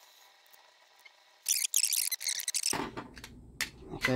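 Small screwdriver prying apart the plastic case of a Callny G202 Plus gate opener: a short run of scraping and clicking plastic, starting about one and a half seconds in and tailing off near the end.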